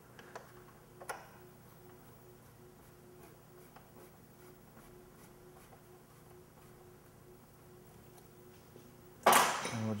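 Faint scattered clicks and ticks of small metal bolts being fitted by hand into a motorcycle's plastic fairing panels, over a faint steady hum. Near the end a short, loud rush of noise.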